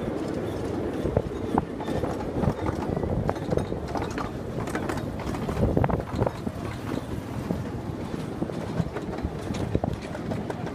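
Miniature train cars rolling along a small-gauge track: a steady low rumble with irregular clicks and knocks from the wheels on the rails.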